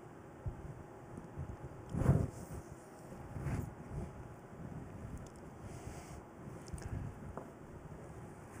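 Soft rustling and irregular low bumps of clothing and handling against a clip-on microphone, with a louder bump about two seconds in.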